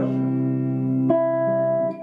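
Electric guitar chords ringing out, with a new chord struck about a second in.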